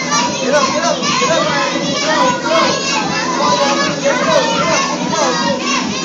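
A group of young children shouting and calling out all at once: a loud, steady clamour of many overlapping high-pitched voices.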